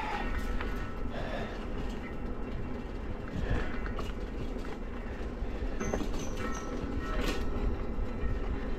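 Steady rumble of a Lectric electric bike riding along a cracked paved trail: tyre noise and wind on the microphone, with a faint thin whine and a few light ticks over it.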